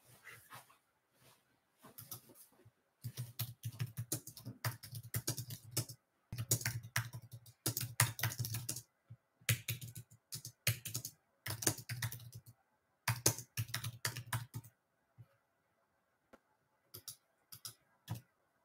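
Typing on a computer keyboard: quick runs of keystrokes with short pauses between them, thinning out to a few scattered clicks near the end.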